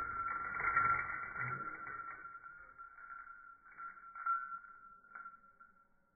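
Slowed-down slow-motion audio of a backyard swing: a deep, stretched rumble that is loudest in the first second or so and then fades, with a few short knocks near the end, over a steady high tone.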